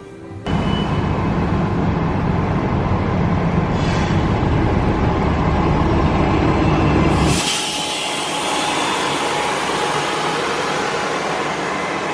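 A Disney Transport bus driving past close by: a loud engine and road rumble with a heavy low end for about seven seconds. It cuts off abruptly, and a thinner, steady hiss remains.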